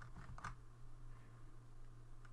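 A few faint clicks from a computer mouse and keyboard over a low, steady hum.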